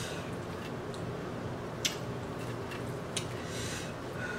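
Mukbang eating sounds: chewing with the mouth closed while fingers pull apart crispy fried chicken, with two short sharp clicks about two and three seconds in, over a steady low background hum.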